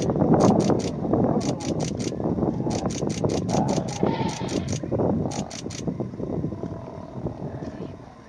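Male lions growling during a fight, loudest in the first second and easing off near the end. Groups of rapid sharp clicks come and go over it.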